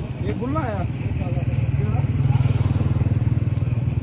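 An engine running steadily nearby with an even low throb, a little louder in the second half, under brief background voices.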